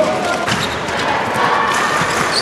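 A sharp knock at the start, then a handball bouncing on the court floor over the murmur of voices in an indoor sports hall.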